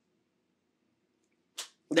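Near silence for about a second and a half, broken by one short hissing whoosh, then a man's voice begins speaking at the very end.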